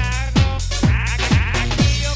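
Electronic dance megamix: a steady kick drum at about two beats a second, with a wavering, warbling sampled effect laid over it through the middle.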